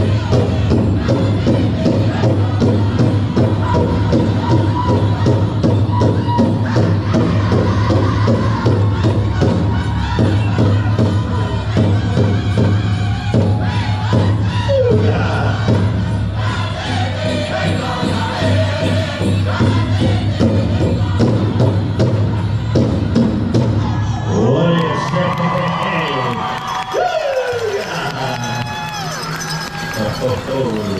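Powwow drum group singing a traditional song over a big drum struck in steady unison beats. The drum and song stop about 24 seconds in, and voices then shout and call out across the arena.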